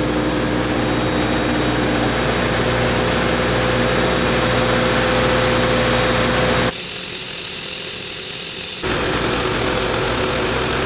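Diesel engine idling steadily at a truck fuel island. Near seven seconds in it breaks for about two seconds to a thinner, hissier sound, then resumes.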